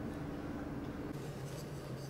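Faint rustling and light scratchy handling noise over a low, steady room hum, as hands and a wooden spoon are picked up and moved near the table.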